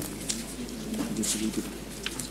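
Papers rustling as pages of a case file are leafed through, in a string of short, crisp flicks, over a low murmur.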